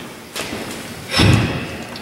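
A thud a little over a second in, a hand set down on the wooden lectern close to its microphone, after a lighter click near the start.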